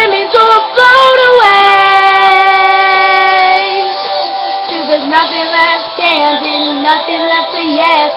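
Female voice singing over backing music. About a second and a half in she holds one long steady note for about two seconds, then goes on with a lower, moving melody.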